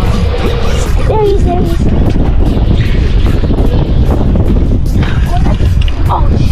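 Wind buffeting the camera microphone on an open boat at sea, a steady low rumble, with brief voice-like wavering sounds about a second in.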